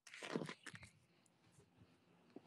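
Brief muffled rustling and crackle of handling noise in the first second, then a few faint clicks and near silence.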